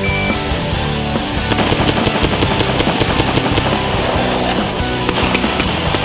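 A rapid string of gunshots, starting about a second and a half in and running until near the end, under loud rock background music.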